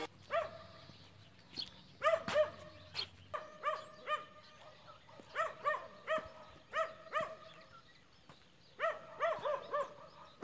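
A dog barking repeatedly in short, high barks, often two or three close together, with brief pauses between the groups.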